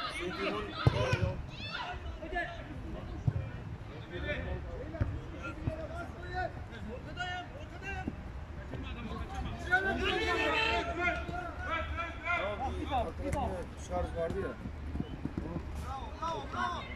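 Men shouting and talking across a small-sided football pitch during play, with a few sharp thuds of the ball being kicked.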